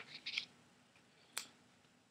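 Faint rustling from a hardback picture book being handled, then one sharp click about a second and a half in; near silence otherwise.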